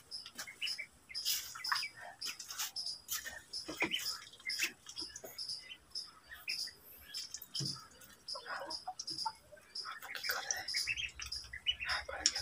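Ducklings peeping repeatedly in short, high chirps, with scattered short clicks.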